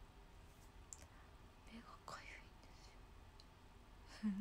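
Near silence with low room tone and a faint, brief whisper about two seconds in.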